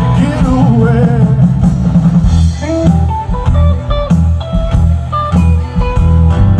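A rock band playing live: a guitar lead line over bass and drums, with wavering bent notes in the first second or so, then a run of separate held notes.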